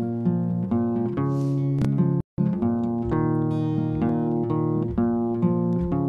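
Guitar plugged in through a cable, picking a ringing instrumental intro of repeated notes and chords. The sound cuts out completely for an instant about two seconds in.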